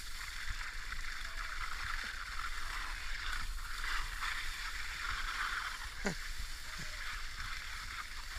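Steady hiss of skis sliding over wet, slushy spring snow, with a low wind rumble on the microphone. A brief falling squeak comes about six seconds in.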